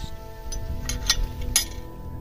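Metal gate latch clinking as a galvanised field gate is unlatched and swung open: a few sharp clinks, the loudest about a second and a half in.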